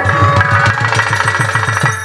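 Instrumental break of a Bengali folk ensemble: a fast, even run of drum strokes under held melody notes.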